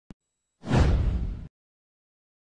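Whoosh sound effect of an animated logo reveal, with a heavy low rumble, about a second long and cutting off abruptly. A brief faint click comes just before it.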